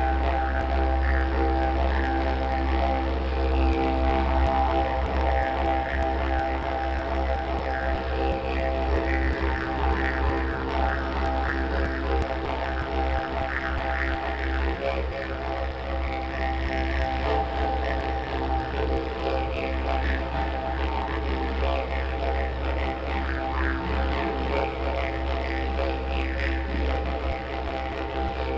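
Plain eucalyptus didgeridoo played as one unbroken low drone, its upper overtones shifting up and down in a changing pattern as it goes.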